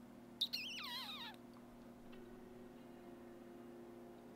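A brief, faint, high warbling tone that slides downward in pitch over about a second, starting about half a second in, over a faint steady low hum.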